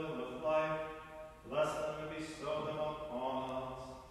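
A man's voice singing liturgical plainchant, mostly on a steady reciting pitch, in several short phrases with brief breaks between them; the chant stops near the end.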